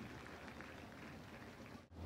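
Near silence: a faint steady background hiss, with a brief dropout to silence near the end.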